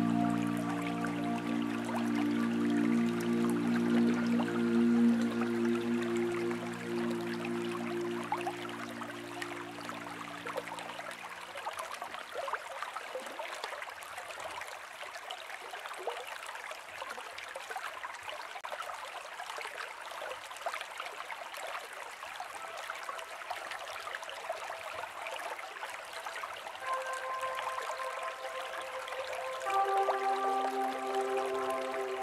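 Slow ambient spa music whose held chords fade out about eleven seconds in, leaving a stream of water trickling and gurgling on its own; soft held higher notes come back in near the end.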